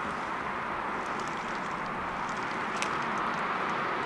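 Steady outdoor background hiss with a few faint ticks, while a Tesla Model S creeps away under Smart Summon; the electric car itself is barely heard above it.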